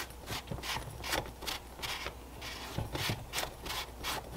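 Metal pipe being twisted to work it out of cured rigid polyurethane casting foam in a silicone skull mold: a string of short rubbing scrapes, about two to three a second.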